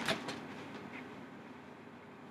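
Light rustling and handling noise from a packaged item turned over in the hands, strongest at the very start and fading within about a second to quiet room tone.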